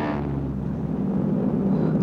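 Twin Allison V-12 piston engines of P-38 Lightning fighters droning steadily as the planes fly low.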